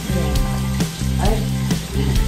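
Pork belly sizzling on a samgyupsal grill, a steady crackling hiss, under background music with a steady beat and bass line.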